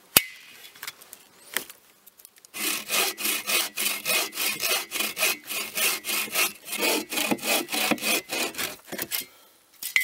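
Folding bow saw cutting through a log in quick, even back-and-forth strokes, about three a second, for some six seconds. Before that, a single sharp click as the folding saw's frame is locked into place.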